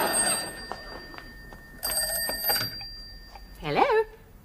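Telephone bell ringing once, a short ring of under a second, as audience laughter dies away; a brief voice follows near the end.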